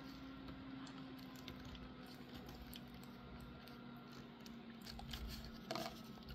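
Faint small clicks and taps of a plastic action-figure hair piece being handled and fitted between the fingers, over a faint steady hum.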